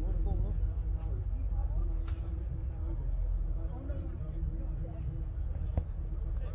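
Outdoor ambience: wind rumbling low on the microphone, faint distant voices, and a short high squeaky chirp that repeats about once a second.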